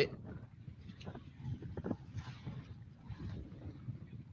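Faint wind and water noise around a bass boat on choppy open water, with a few faint fragments of voice.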